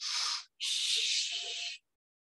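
A woman taking slow, deliberate breaths while holding a knee-to-chest stretch: a short breath, then a longer one lasting just over a second.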